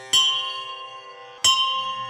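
A bell struck twice, about a second and a half apart, each stroke ringing out clearly and fading, over a soft held drone in a devotional music recording.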